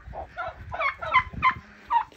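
Domestic turkey calling: a run of about five short calls, each sliding down in pitch.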